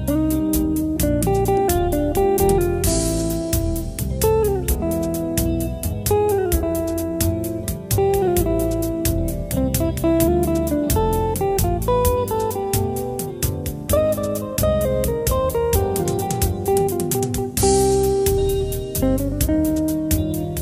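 Instrumental guitar music: a lead guitar melody with bent and sliding notes over low backing and a steady beat. A crash comes about three seconds in and again near the end.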